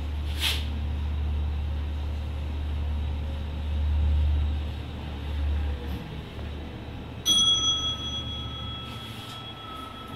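Glass lift cab running with a steady low hum that fades away about six seconds in as it stops. About a second later a single bright chime rings on for two to three seconds: the arrival signal at the floor.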